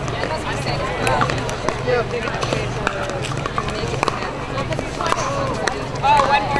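Chatter of several voices in the background, with scattered sharp pops of pickleball paddles striking plastic balls on neighbouring courts.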